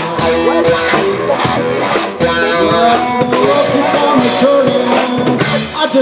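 Live trio playing: electric guitar (Paul Reed Smith McCarty through a Koch Studiotone amplifier) playing bending, sliding lines over a drum kit and upright double bass.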